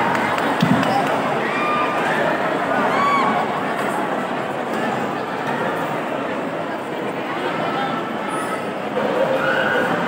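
Audience chattering, with scattered shouts and cheers from many voices.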